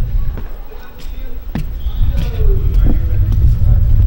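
Steady low rumble of wind buffeting the microphone and rolling motion as the camera travels fast along a paved path, with a couple of sharp knocks in the first two seconds.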